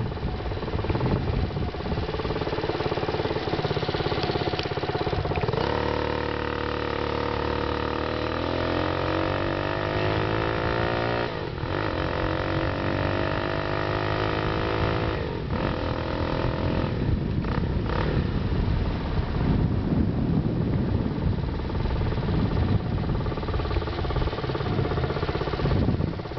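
Four-stroke motorized bicycle engine accelerating through its shifter gears: its pitch climbs steadily, drops suddenly about eleven seconds in, climbs again and drops once more a few seconds later, as at each upshift. After that it runs on less evenly.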